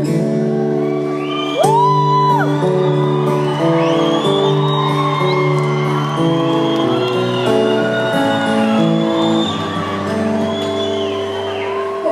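Acoustic guitar playing a slow run of held chords, with fans in the crowd whooping and shouting over it. The whole thing echoes through a large hall.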